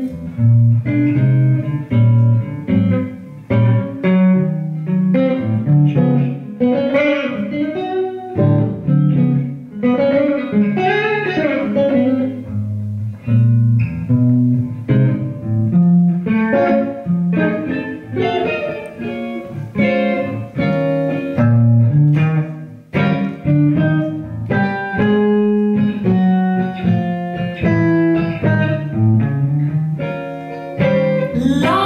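Electric guitar solo in a slow blues on a semi-hollow-body electric guitar: a stream of single plucked melody notes and chords, with low bass notes moving underneath.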